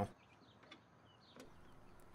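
Mostly quiet, with two faint clicks about a second apart: the plastic trunk release handle being pushed into the trunk lid's carpeted trim panel.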